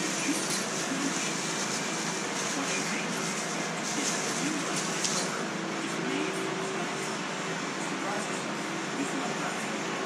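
Plastic shopping bag crinkling as hands rummage in it for small parts, busiest in the first half, over a steady background hiss.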